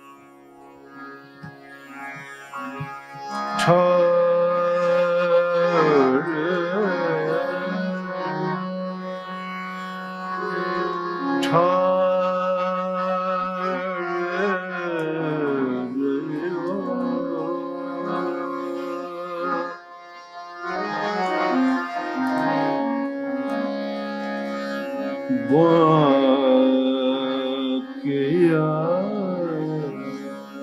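Hindustani classical vocal performance: a male voice sings gliding melodic phrases over sustained harmonium notes and a tanpura drone. It starts softly and swells in a few seconds in, with a brief drop in level about two-thirds of the way through.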